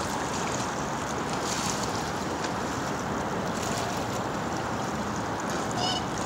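Steady rushing wind and water noise from choppy harbour water, even throughout with no distinct events.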